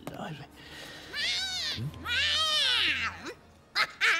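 A cat meowing: two long, wavering meows, each rising and then falling in pitch, the second one longer.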